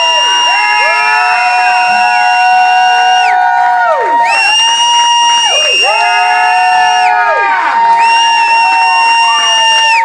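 Sustained electric-guitar feedback from the band's amplifiers: one high tone held steady throughout while other pitches slide, drop out and return, the highest layer cutting off twice and coming back, as the set's last song ends. A crowd cheers beneath it.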